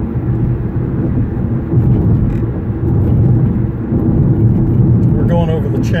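Steady low rumble of road and engine noise inside a car's cabin while it drives at highway speed. A man starts speaking near the end.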